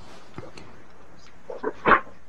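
A pause on a video call: steady low hiss, then a few short breaths and mouth noises in the last half second, as a man draws breath to go on speaking.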